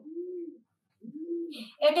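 A pigeon cooing: two low, rounded coos, the second starting about a second in. A woman's voice begins a word near the end.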